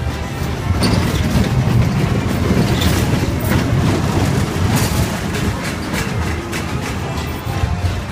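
Music playing over the rumble and clatter of a small dragon kiddie roller coaster's train of cars running along its tubular steel track.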